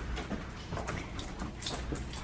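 Husky puppy's claws clicking on a hard floor as she trots, a scatter of light uneven taps, a few sharper ones near the middle and end.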